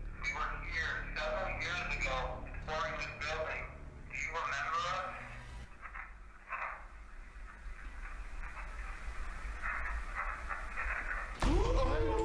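Voices from a replayed ghost-hunting recording, then from about halfway a quieter, hissy stretch with faint murmuring.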